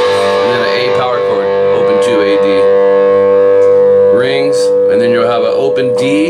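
Amplified electric guitar: a chord struck at the start rings out and is held for several seconds, with further notes picked over it.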